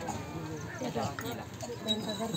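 Overlapping chatter from several people talking at once, with no single clear voice.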